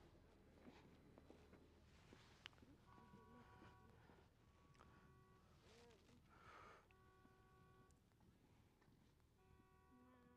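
Near silence: faint background with a few brief, faint steady tones.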